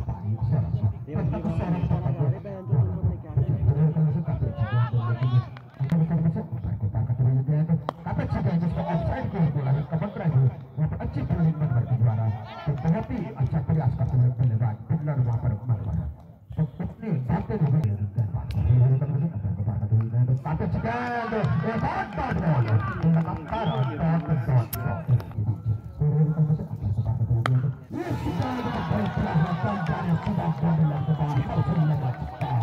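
Men's voices talking and calling out over one another almost without pause, with music faintly underneath.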